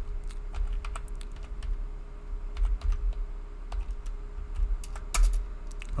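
Typing on a computer keyboard: a run of irregular key clicks, with one louder keystroke about five seconds in, over a low steady hum.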